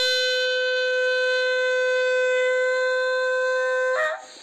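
Bugle holding one long, steady note of a funeral bugle call, played after a few shorter notes; the note cuts off sharply near the end.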